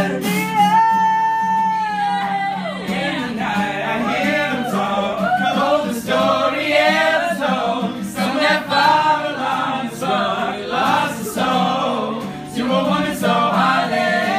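A mixed group of voices singing a pop song together in harmony, a cappella style. One high note is held near the start and slides down about two seconds in, then the voices move through quick runs and phrases.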